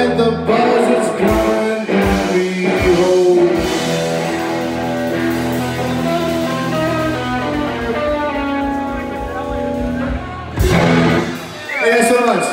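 A live blues band of electric guitar, bass guitar and drums plays the closing bars of a slow blues, with sustained chords that fade. A last loud chord lands about ten and a half seconds in and rings out.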